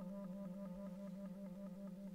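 Solo clarinet playing a rapid, even trill between two neighbouring low notes.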